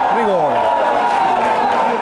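A man's voice drawing out one long syllable that falls in pitch during the first second, over steady background noise that carries on after it.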